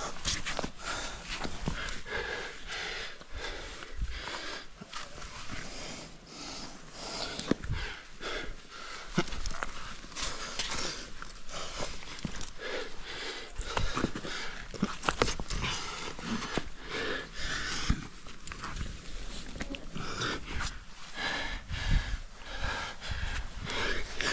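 A rock climber's hard, rhythmic breathing close to a helmet-mounted microphone as he works up a granite crack. Occasional sharp clicks and scrapes of hands, shoes and gear on the rock.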